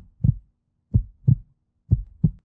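Heartbeat sound effect, a low double thump repeating about once a second, used as a suspense cue while the decision is being made.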